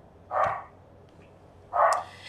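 A dog barking twice, once about half a second in and once near the end.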